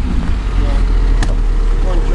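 Lada Niva 4x4's engine running with a steady low drone, with brief faint voices over it.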